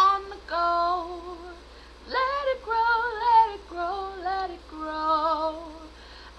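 A woman singing solo, her voice raspy from a cold. She sings several phrases of held, wavering notes, with a brief pause about two seconds in.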